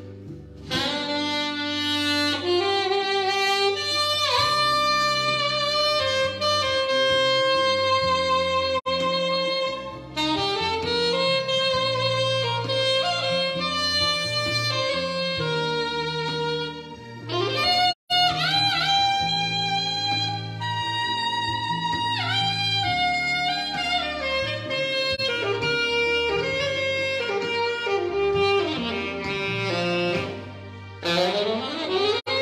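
Alto saxophone playing a jazzy melody, scooping up into several notes, over a backing track with a bass line. The sound drops out briefly about halfway through.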